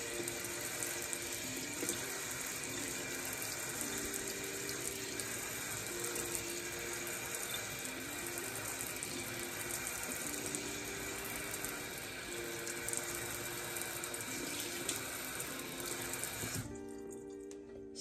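Kitchen faucet spraying a steady stream of cold water over a clay pot and hands in the sink. The water is shut off about a second before the end.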